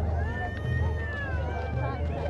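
Crowd chatter from people walking close by, over a steady low hum. Through the middle rises one long, high-pitched cry, like a meow or a child's squeal, that lifts a little and then falls away after about a second.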